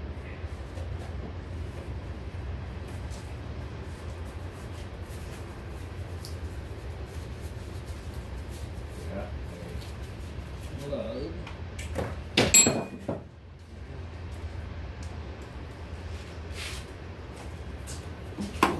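A steady low hum with faint clicks and brief quiet mutters, and one loud sharp clack a little past halfway.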